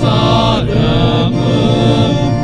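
Small male church choir singing a chant together into microphones, the voices holding notes and moving between them every half second or so over a steady low note.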